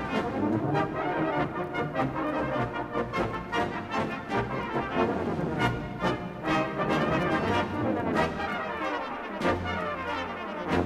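A brass band playing a lively passage of short, accented notes over sustained low brass.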